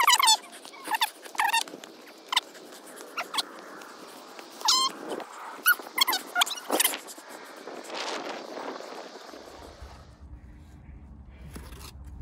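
A series of short, high-pitched squeaky calls, a dozen or so spread over the first seven seconds, above a faint hiss. About ten seconds in, this gives way to a low steady hum.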